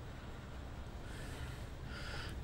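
Quiet workbench room tone with a low steady hum, and a faint breath through the nose in the second half, just before the speaker talks again.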